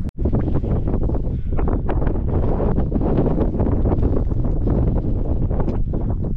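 Strong wind buffeting an action camera's microphone: a loud, unbroken gusty rumble.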